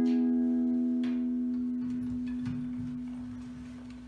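The final chord of a song on acoustic guitar ringing out and slowly dying away, the song's ending. A couple of faint knocks sound over it.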